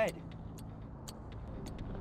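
Low, steady outdoor rumble with faint, sharp ticks at an even pace of about three a second.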